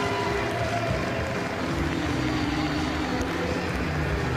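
Football match sound in a stadium: music mixed with a low steady rumble and some crowd noise and voices, with no single sudden event standing out.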